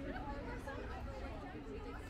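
Voices of passersby chatting as they walk by, indistinct, over a steady low rumble of street background noise.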